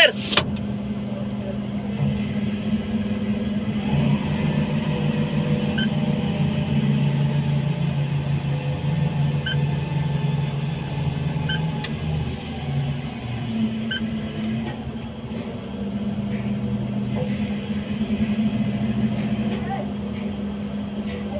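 Large rotating steel drum and its drive running with a steady low hum that swells and eases a little. Faint high ticks recur every two to four seconds.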